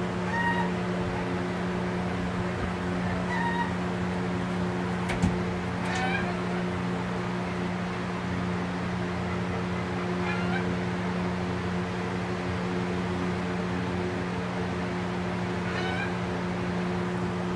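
Domestic turkeys giving short, high, mewing calls, about five of them a few seconds apart, one with a falling pitch. A steady low hum runs underneath, with a single sharp click about five seconds in.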